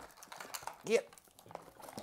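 Faint rustling and small clicks of a rubbery toy glove being handled and tugged in its cardboard box insert, with a short spoken "yeah" about a second in.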